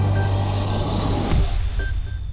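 The closing swoosh of a news programme's title music: a rushing whoosh over a held low bass note, beginning to die away near the end.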